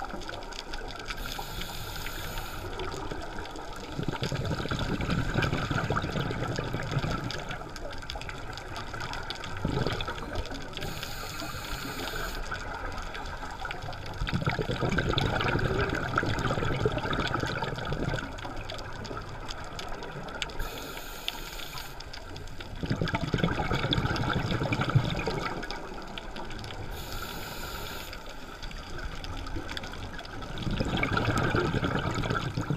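Scuba diver breathing through a regulator, heard underwater: a short hiss on each inhalation, then a longer rush of exhaust bubbles. About four breaths, roughly one every nine or ten seconds.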